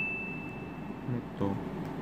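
A single high ringing tone dying away over the first second, followed by a short spoken question.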